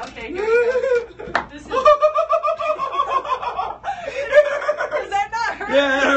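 Wordless voices laughing and crying out in pain at a man walking barefoot over Lego bricks, with one long drawn-out cry about two seconds in and a single sharp click just before it.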